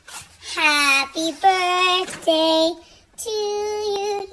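A high-pitched voice singing about five short held notes in a sing-song way, the first sliding up into its note.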